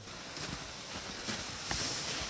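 Quiet outdoor background on a snowy slope, with a few soft, scattered crunches or knocks.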